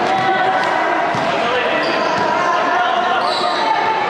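A basketball bouncing on a court amid indistinct voices from players and onlookers.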